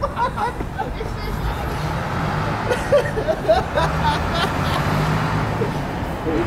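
City road traffic: a vehicle's engine hums steadily, growing stronger about two seconds in, over a general traffic wash, with scattered voices of passers-by.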